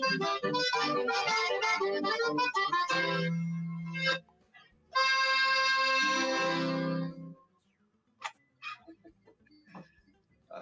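Accordion with acoustic guitar playing a folk tune in quick notes, ending on a long held chord about five seconds in. Then near quiet with a few faint knocks.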